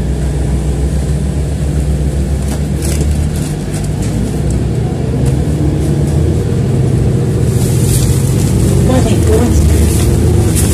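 City transit bus running, heard from inside the passenger cabin: a steady low engine and road drone that grows a little louder over the last few seconds.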